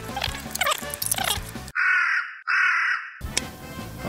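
The background music cuts out about halfway in, and in the gap two loud crow caws sound, an edited-in comic sound effect. The music returns just after.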